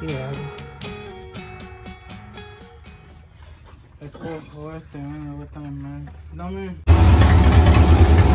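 Background guitar music with a singing voice, then, about a second before the end, a sudden cut to a Chevy small-block 350 V8 running loudly through short open exhaust stacks that exit through the hood. The engine has just been restarted after the intake manifold was resealed to stop an oil leak.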